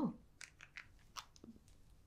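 Lip gloss tube being handled: a handful of faint, short clicks and taps, about six over a second and a half, after a brief spoken "oh" at the very start.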